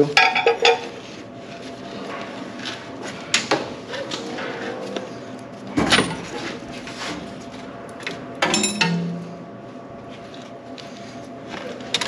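Scattered metal clinks and knocks as hands and a wrench work at a bolt on the base of a coin-laundry washer, with one louder knock about six seconds in and another cluster of clanks a couple of seconds later.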